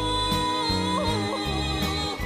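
A woman singing an enka ballad over a band accompaniment: she holds a long high note that wavers in a vocal ornament about a second in, then the band plays on beneath.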